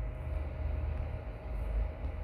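A steady low background rumble with a faint steady hum above it, with no speech.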